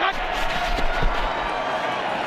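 Steady stadium crowd noise from a televised football game, a continuous hum of the crowd with faint indistinct voices.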